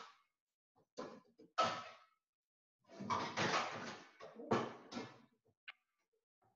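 A pot being fetched from a kitchen cupboard: a few separate clatters and bangs of a cupboard door and cookware, the longest run of them about three to four seconds in.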